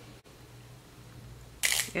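Quiet room tone with a steady low electrical hum, broken by a brief dropout near the start. Near the end comes a short hiss-like noise, then a woman's voice starts speaking.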